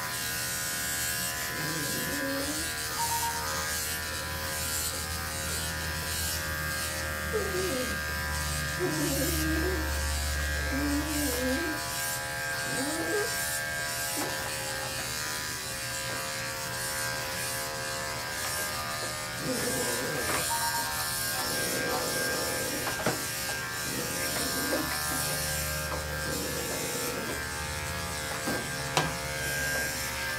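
Electric dog grooming clippers fitted with a 10 blade and a 4 comb guard, running with a steady hum as they cut through a poodle's coat.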